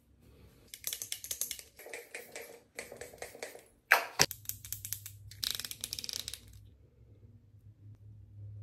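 Close crackling rustle of hands rubbing and handling things near the microphone, in several bursts. A single sharp click comes about four seconds in.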